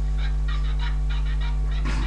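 A loud, steady low electrical hum, with a quick run of about ten short, high chirp-like bursts over it.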